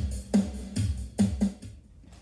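Recorded dance music with a steady drum beat and bass, ending about a second and a half in.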